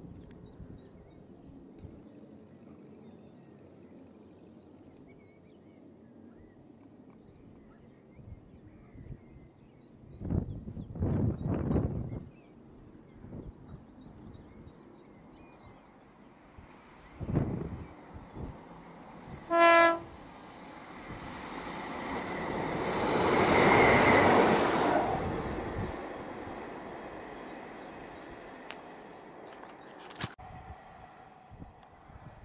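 A Class 150 diesel multiple unit gives one short single-tone horn blast. Its engine and wheels then swell to a peak as it passes close by and fade away.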